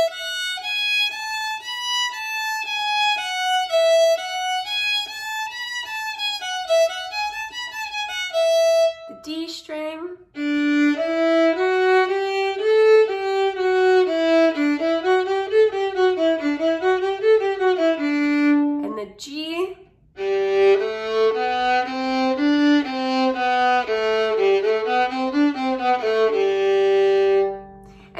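Solo violin playing a fourth-finger exercise: an open-string scale stepping up through four fingers and back down, repeated several times. It is played first on the E string, then after a short break on a lower string, then after another break on a lower string still.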